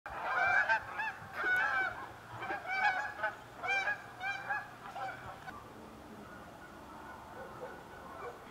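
Geese honking: a quick run of about a dozen honks that thins out and dies away after about five seconds.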